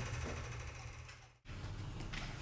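Faint, rapid clicking of typing on a laptop keyboard that cuts off abruptly about one and a half seconds in, leaving a low steady hum.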